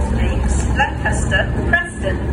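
Class 37 diesel locomotive's English Electric V12 engine running with a steady low drone as the train moves slowly past, with a voice talking over it.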